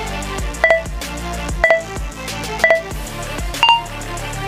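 Workout interval timer beeping four times, a second apart, over background music: three equal beeps for the last seconds of the rest countdown, then a higher-pitched fourth beep signalling the start of the next exercise.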